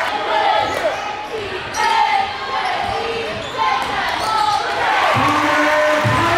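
Live gym sound of a basketball game: a ball bouncing on the hardwood court and many short, sliding squeaks of sneakers over a steady crowd chatter, with shouts near the end.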